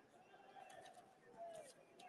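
Near silence of an open-air ceremony pause: a faint hush with a few soft, brief gliding tones and light ticks.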